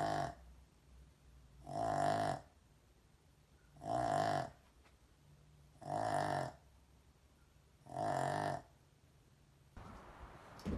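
A small dog snoring: five regular snores about two seconds apart.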